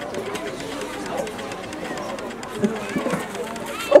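Low murmur of many children's voices chattering at once, with no single voice standing out; one voice comes in clearly at the very end.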